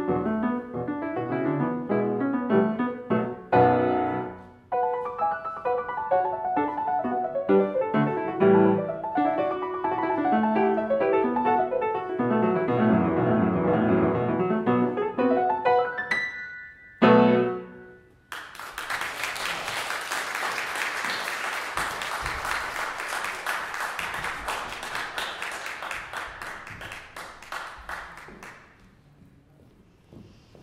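Solo grand piano playing and ending on final chords. About two-thirds of the way through, audience applause starts and runs about ten seconds before dying away.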